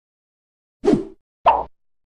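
Two short plop sound effects, about half a second apart, with dead silence around them.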